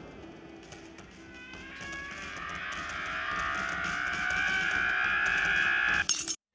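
Soundtrack of an animated cartoon short playing back: one sustained, many-toned sound that swells steadily louder and climbs slightly in pitch, then cuts off suddenly at the end.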